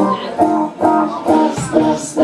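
Live blues trio playing an instrumental stretch: electric guitar chords repeating about twice a second over bass and drums.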